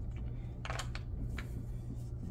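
A few light clicks and taps of small translucent blocks being set into and knocking against a wooden sorting tray, one a little longer about two-thirds of a second in and two softer ones later.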